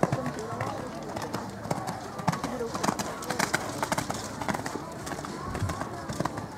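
People talking in the background while a horse canters on a sand arena, its hoofbeats heard as soft thuds.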